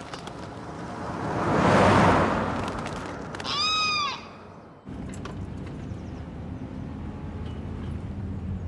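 A bird calls about three and a half seconds in, after a long swelling whoosh that peaks near two seconds. From about five seconds in, a car engine hums steadily.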